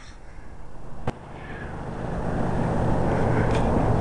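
A car driving closer along the street, its engine hum and road noise growing steadily louder. A single sharp click about a second in.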